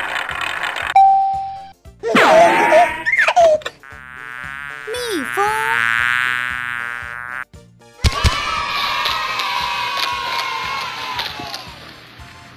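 Cartoon sound effects for a quiz reveal: a short chime about a second in, quick gliding cartoon sounds, then a cartoon honeybee buzzing for a few seconds. About two-thirds of the way through comes a sharp pop of toy confetti cannons, followed by a sustained celebratory sound.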